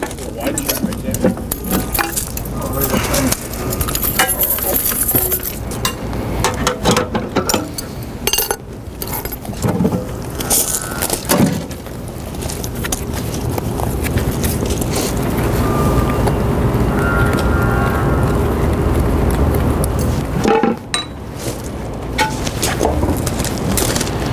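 Metal clinks, clicks and knocks as the latches and covers of an electric rail switch machine are opened and lifted off. Through the middle a louder, steadier noise with a low hum takes over for several seconds.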